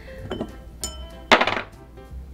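Glass tasting glasses and their caps clinking as they are handled on a bar top, a few light clinks with a brief ring, then one louder knock about a second and a half in, over background music.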